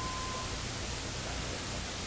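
Steady hiss of background recording noise, with a brief faint tone lasting about half a second at the start.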